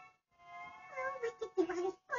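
A high-pitched, meow-like vocal sound with a gliding, wavering pitch, growing louder in the second half.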